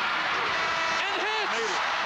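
Loud, steady basketball arena crowd noise as a last-second shot goes up, with a man's voice calling out about a second in.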